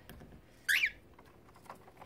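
A cockatiel gives one short chirp that slides in pitch, a little under a second in.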